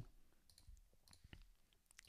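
Near silence with a few faint, scattered computer mouse clicks as files are selected.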